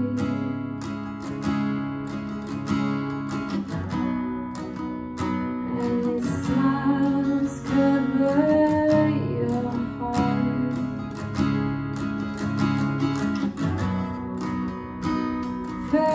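Steel-string acoustic guitar strummed in a slow, steady chord pattern, with a woman's voice singing along at times.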